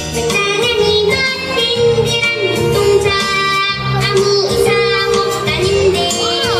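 A young girl singing a Korean children's song solo over a band accompaniment with a steady bass line; her voice comes in just after the start, following an instrumental passage.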